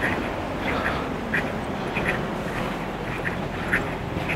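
A bird calling in short, sharp notes, repeated irregularly about once or twice a second, over a steady low background noise.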